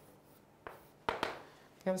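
Chalk on a blackboard: a few short taps and strokes as the answer is boxed, the loudest about a second in.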